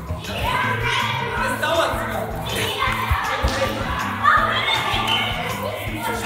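Indistinct voices, children's among them, mixed with music, echoing in a large indoor hall, with a few dull thuds in the middle.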